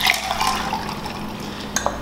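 Orange juice poured from a small glass measure into a stainless steel cocktail shaker, a steady pour for most of the two seconds, with a short click near the end.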